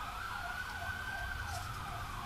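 Faint siren-like wailing tone that glides slowly upward, then levels off.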